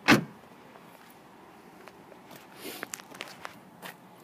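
A car's trunk lid shutting with one loud thump, then faint footsteps and light scuffs.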